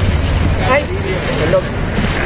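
A vehicle's low engine rumble nearby that fades away under a second in, followed by brief background voices.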